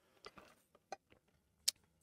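Quiet pause with a few faint, short clicks, the sharpest near the end: a drink being sipped through the straw of a tumbler, and the tumbler being handled.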